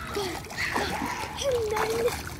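Pool water splashing as a child kicks and paddles close to the microphone, with a child's voice sounding briefly near the start and again, held, in the second half.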